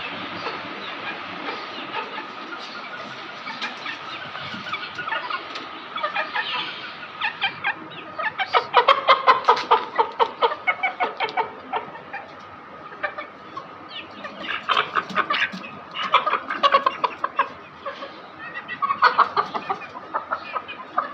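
Young Aseel chickens clucking in quick runs of short calls, loudest about halfway through and again near the end, over a steady background hum.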